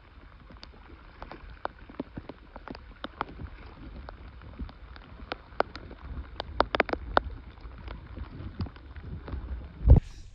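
Light rain: scattered raindrop ticks landing irregularly on the water and the kayak, growing denser about two-thirds of the way through, over a low rumble of wind on the microphone.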